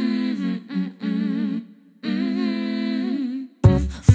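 A woman humming a wordless melody unaccompanied, in short phrases with a slight waver and brief breaks between them. Near the end the band enters with deep bass and percussion hits.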